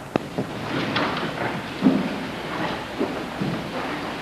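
Handling noise on a handheld microphone: a sharp click just after the start, then rustling and soft bumps as it is held and moved.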